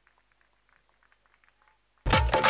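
Near silence: the sound track drops out.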